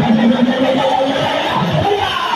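Loud, continuous church praise music with a congregation's voices.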